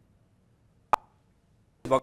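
A pause in a man's speech: near silence with a single short mouth click about a second in, then his voice starts again just before the end.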